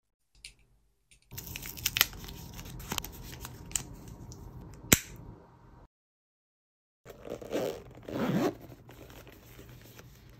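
Close-up handling of a small plastic wireless-mic transmitter with a furry windscreen, with several sharp clicks, the loudest about five seconds in. After a second of silence, a black fabric carry case is handled, with two louder scraping rustles around seven and eight seconds in, then softer handling.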